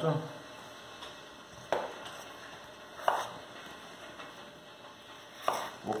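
Kitchen knife cutting through a raw potato and striking a wooden cutting board: two sharp knocks about a second and a half apart.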